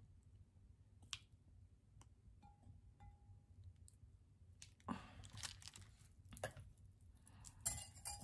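Faint, sparse clinks and scrapes of a silicone spatula and plastic measuring spoon against a glass measuring cup as the spoon is scraped clean into the liquid, with a few small ringing pings from the glass.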